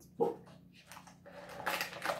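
A short, sharp vocal sound about a fifth of a second in, then the soft clicks and rustle of small plastic toy pieces being handled.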